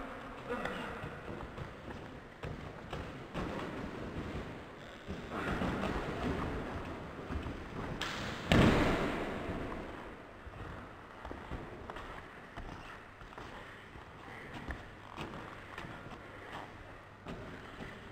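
Wrestlers scuffling and landing on gym mats, with one heavy thud of a body hitting the mat about eight and a half seconds in, and faint voices at times.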